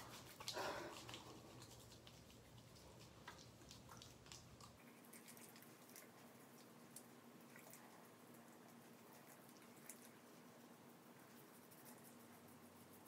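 Near silence: hands rubbing foaming facial cleanser together and over the face, heard as a soft brief rustle about half a second in and then only scattered faint wet clicks.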